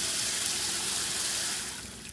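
Water from a handheld shower head spraying under good pump pressure into a plastic bucket of water: a steady hissing splash that dips briefly near the end, then resumes.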